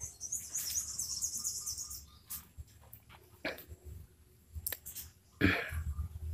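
Birds chirping in a fast, high twitter for the first two seconds, with scattered faint clicks afterwards. One short, loud sound comes near the end.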